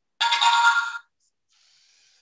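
A short electronic chime of several tones, lasting under a second, as the program is downloaded to and started on a LEGO EV3 robot. Near the end comes a faint high whir as the robot's motors begin to drive it.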